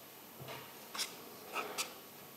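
Faint handling noises at a table: light rustling with a few sharp clicks, the loudest about a second in and near the end.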